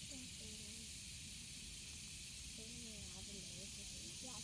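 Faint outdoor ambience: a steady hiss with distant voices twice, once near the start and again past the middle.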